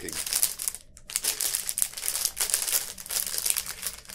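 Plastic snack packet crinkling as it is handled and opened, a dense run of crackles with a short pause about a second in.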